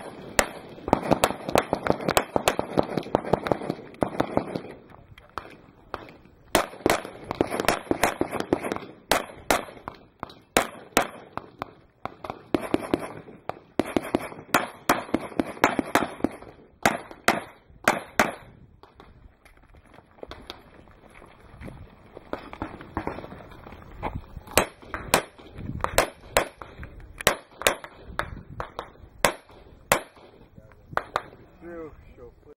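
Handgun shots fired in quick strings of several shots each, with short pauses between strings, as a shooter works through a practical-shooting stage.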